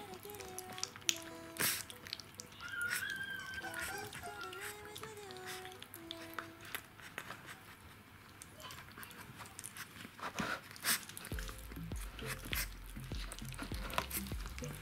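A Rottweiler puppy eating soft puree from a plastic bowl, heard as a scatter of short wet lapping and smacking clicks, under background music. The music carries a sustained melody in the first half, and a low bass beat comes in near the end.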